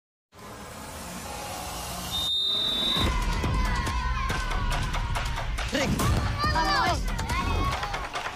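After a moment of silence, a referee's whistle blows once for about a second, about two seconds in, then shouting voices of players and spectators follow.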